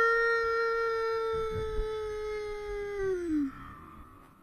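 A woman's long, high-pitched excited cry held on one steady note for about three seconds, sliding down in pitch as it trails off.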